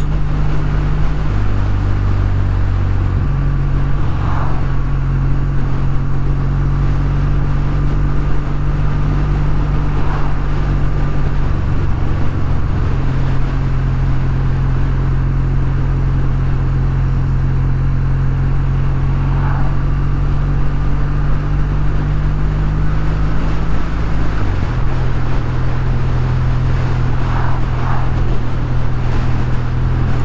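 Kawasaki W800's air-cooled parallel-twin engine running steadily at cruising speed over a constant rush of wind and road noise. Its note steps to a new pitch a few times, most clearly about 24 seconds in.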